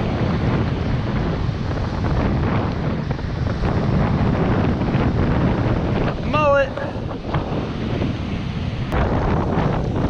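Wind buffeting the microphone over the steady wash of breaking surf. About six and a half seconds in comes one short, wavering high-pitched call.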